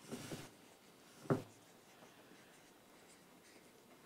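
Dry-erase marker writing on a small whiteboard: a short scribble at the start, then a single sharp tap about a second in.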